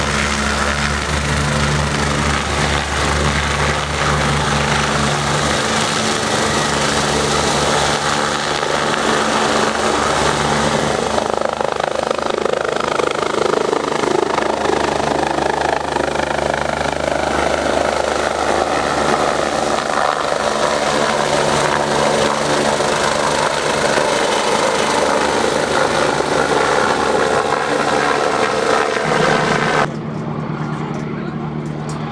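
Twin-turbine BK 117 air-ambulance helicopter taking off and flying over, its rotor and turbines running loud and steady; in the second half the turbine whine sinks in pitch as it draws away.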